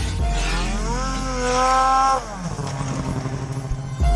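A snowmobile engine rising in pitch, holding high, then dropping away a little after two seconds in, with electronic music underneath.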